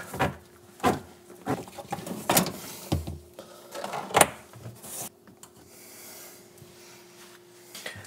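Plastic dishwasher drain hose being handled and rerouted under a kitchen sink: five light knocks and clatters in the first half, then softer rubbing and scraping, over a faint steady hum.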